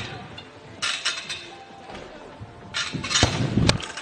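A burst of noise about a second in, then more noise with two sharp knocks about half a second apart near the end.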